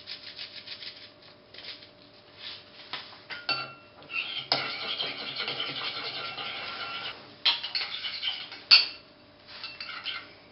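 A metal spoon whisking an egg-yolk and sour-cream mixture in a ceramic bowl: quick, continuous scraping strokes against the bowl, with a sharp tap near the end.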